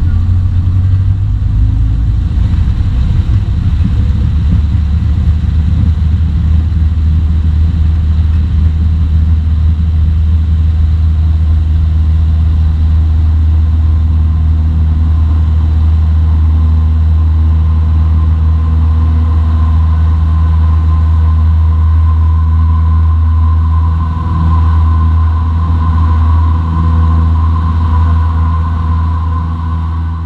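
Single-engine piston airplane engine at full takeoff power, heard inside the cockpit as a loud, steady drone through the takeoff roll and climb-out.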